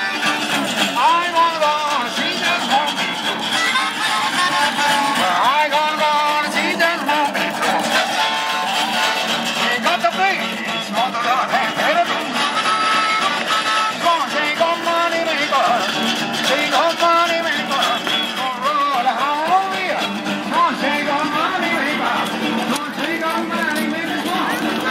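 Live blues on an electric archtop guitar and a harmonica played in a neck rack, the harmonica bending its notes over the guitar's rhythm.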